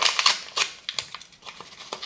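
A plastic spice sachet being crinkled and torn open by hand: a run of irregular crackles, loudest at the start and thinning out towards the end.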